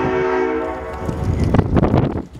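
Diesel freight locomotive's air horn sounding a chord of several notes for the grade crossing, cutting off about a second in, followed by rumbling noise of the approaching train and wind.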